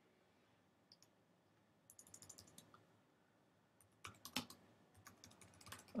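Faint computer keyboard typing: two short runs of key clicks, one about two seconds in and another from about four seconds in, as a text title is typed.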